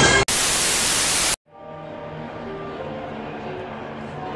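A burst of loud white-noise static lasting about a second, cut off suddenly. After a brief dropout a quieter steady background with faint held tones follows.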